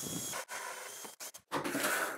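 Cordless drill boring a 32 mm hole through a wooden board, running in three short bursts with brief stops between them.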